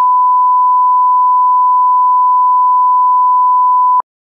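Broadcast line-up reference tone played with colour bars: one pure, steady beep held without change, cutting off suddenly at the end.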